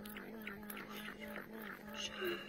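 Rapid, irregular crisp clicks of a swallowtail caterpillar chewing leaves, over a steady low tone.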